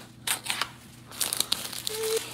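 Outer sleeve being slid off a small cardboard product box by hand: dry scraping and rustling in two bursts about a second apart.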